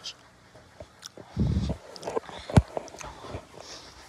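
Scattered knocks and handling noise from a phone being carried while walking, with a low rumble about a second and a half in and a sharp knock a second later.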